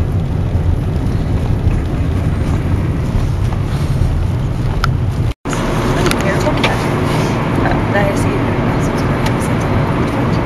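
Steady low road and engine noise heard from inside a moving car. The sound cuts out completely for an instant about halfway through.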